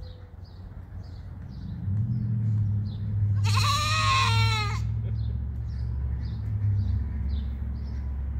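An animal call: one wavering, bleat-like call about a second long near the middle, over a low steady hum. Faint high chirps repeat about twice a second throughout.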